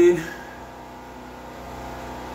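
Generator engine running steadily while it charges a battery bank through the inverters, heard as a low hum in the background.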